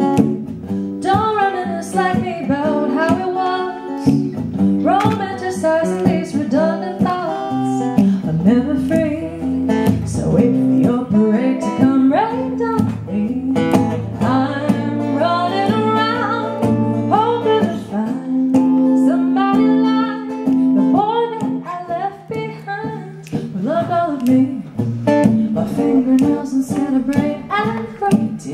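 Live song: an acoustic guitar strummed as accompaniment while a singer carries the melody.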